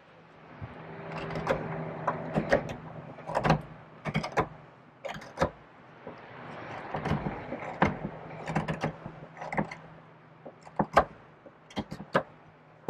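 Hook knife scooping out the bowl of a wooden spoon: long scraping cuts that build in strength, each run ending in sharp clicks and snaps as shavings break free, then a few separate sharp clicks near the end.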